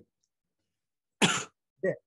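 A man coughs once, sharply, a little over a second in, followed by a brief throat-clearing sound near the end.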